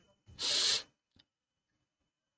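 A short, sharp breath drawn in by the narrator close to the microphone, lasting about half a second, followed by one faint click.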